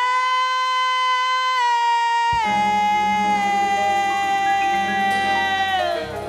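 A female soul singer holds a long, sustained note alone. About two seconds in, the band comes in underneath with low notes, and she slides slightly lower and holds the note until near the end.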